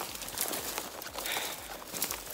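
Irregular footsteps and rustling as someone walks through tall dry marsh grass, the stalks brushing past.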